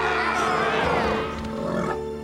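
Cartoon dinosaur roars that waver in pitch and fade out after about a second and a half, over sustained orchestral background music.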